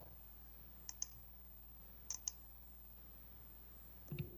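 Two pairs of faint, short clicks, one pair about a second in and another just after two seconds in, over a low, steady hum.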